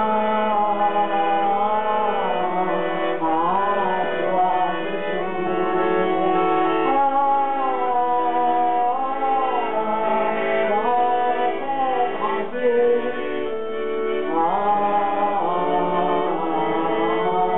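Live French chanson: a Universal chromatic button accordion plays the accompaniment while a woman sings the melody, her voice sliding between notes.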